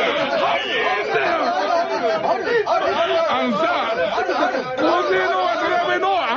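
Speech only: several voices talking over one another in a lively exchange.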